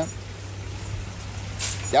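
Steady rushing of a creek running over rocks, heard as an even wash of water noise in a pause between speech.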